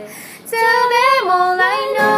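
Women singing a pop ballad to acoustic guitar. After a brief lull, a sung line comes in about half a second in, rising in pitch and then stepping down.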